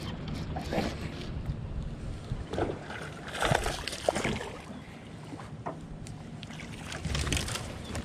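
A hooked bass thrashing and splashing at the surface beside the boat as it is reeled in, heard as several short bursts of splashing.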